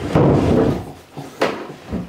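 Electrical cable being pulled off its reels and dragged over bare floorboards: a rough scraping rumble for most of the first second, then a sharp knock about a second and a half in and a smaller one near the end.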